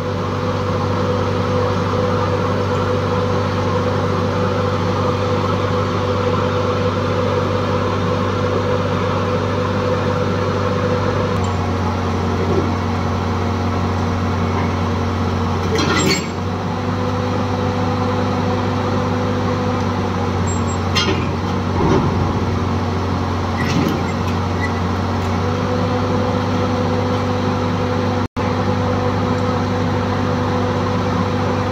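Tata Hitachi crawler excavator's diesel engine running steadily under hydraulic load, its tone shifting a few times as the boom and tracks work, with a few brief metallic knocks.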